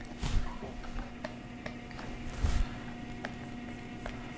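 Faint taps and scratches of a stylus on a graphics tablet as sketch strokes are drawn, a few small clicks among them, over a steady low electrical hum.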